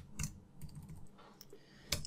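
Computer keyboard typing: a handful of faint, irregularly spaced key taps.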